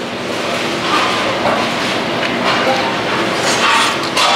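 A person biting into and chewing a slice of square pizza with chicken topping, heard as a steady noisy sound with no words.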